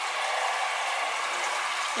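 Water running and splashing steadily as it drains out of a lifted stock pot strainer insert into the sink.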